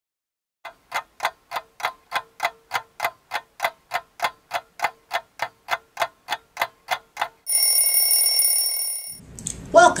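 Stopwatch ticking evenly, about three ticks a second, for several seconds. It is followed by a bright ringing bell for about two seconds, like a timer going off. A woman's voice begins just before the end.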